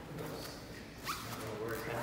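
A toddler making a few vocal sounds while he is picked up, with clothing rustling and a quick rising squeak about a second in.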